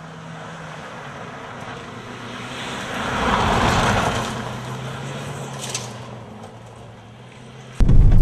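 Fiat Bravo driving past fast on a loose gravel road in a rally-style slide: engine and tyres on gravel grow louder to a peak about halfway, then fade as the car moves away. Just before the end the sound jumps abruptly to the much louder sound inside the car.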